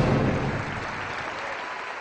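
Audience applause, a dense even clapping that fades steadily away.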